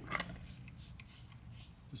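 Faint short spritzes of a hand trigger spray bottle applying wheel cleaner to a car wheel, over a low, steady background rumble.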